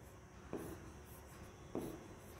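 Faint sounds of drawing on an interactive whiteboard screen, with two soft taps, one about half a second in and one near the end.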